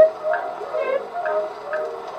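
Acoustic 1917 Edison Diamond Disc recording played on an Edison A-80 phonograph: a women's vocal trio sings short, detached repeated "knit" notes over a small orchestra, about two or three a second, the first the loudest. The sound is thin, without deep bass or bright treble, as is typical of an acoustic-era recording played through a horn.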